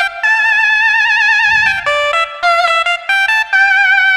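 Yamaha PSR-SX900 keyboard's Nadaswaram voice, a reedy Indian double-reed wind tone, playing a slow melody of held notes with a wavering vibrato.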